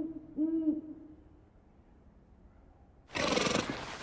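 Eurasian eagle owl hooting: a short, deep hoot about half a second in, with the tail of an earlier hoot at the very start. Near the end a sudden loud, rough noise begins.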